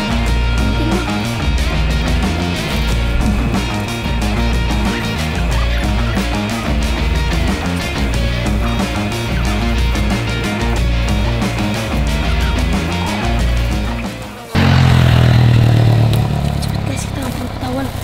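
Background music with a steady, pulsing bass beat that cuts off suddenly near the end, giving way to a louder low hum.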